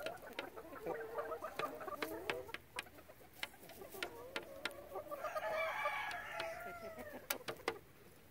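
Backyard chickens clucking while they feed, with many sharp taps of beaks pecking on a plastic tray. About five seconds in, one bird gives a longer drawn-out call that rises and falls over about two seconds.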